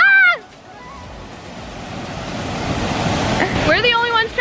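A short laugh, then a steady rushing noise of falling water and wind on the microphone that grows gradually louder over the next few seconds.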